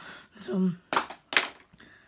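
A brief mumbled word, then two sharp taps about a third of a second apart.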